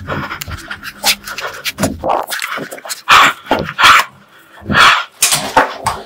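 Loud, irregular dog-like panting and huffing with some rough growl-like sounds, the strongest huffs coming about three, four and five seconds in.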